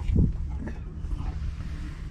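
Low steady hum of a small electric pump pushing fresh water through a Spectra watermaker in a forward flush, with a brief knock just after the start.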